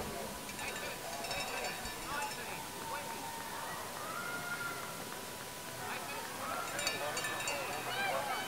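Faint, distant voices over the open-air background noise of a stadium, with a thin steady tone underneath.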